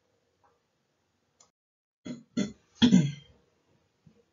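A woman clears her throat about two seconds in: three short sounds, each falling in pitch, after a stretch of near silence.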